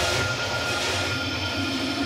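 Progressive trance breakdown: sustained synth pads over a soft noise wash, with no beat.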